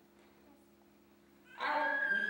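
A faint steady hum, then a high-pitched human voice that starts suddenly about one and a half seconds in.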